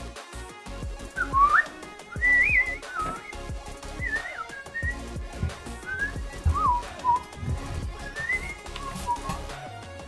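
A person whistling a wandering tune in short gliding phrases, over scattered light knocks and bumps as a toilet is lifted and set down onto its flange.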